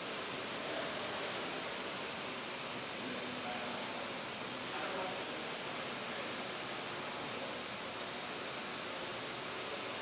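AR.Drone quadrocopter's propellers running steadily: an even whirring hiss with a thin high whine.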